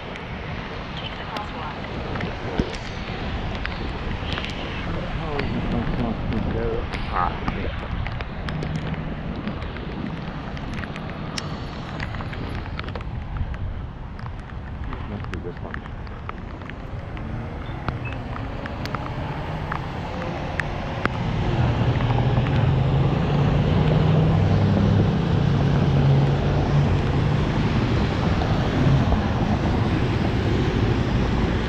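Wind rushing over an action camera's microphone on a moving bicycle in the rain, with car traffic passing on wet pavement and scattered small clicks. A vehicle's low engine rumble grows louder about two-thirds of the way through.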